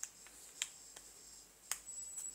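Four faint sharp clicks at uneven intervals, the last the loudest, over a faint steady high-pitched whine.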